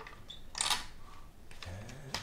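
Plastic scraping and clicking as an Apple Keyboard II's key assembly is eased up out of its plastic bottom case. There is one longer scrape about half a second in, then a few light clicks near the end.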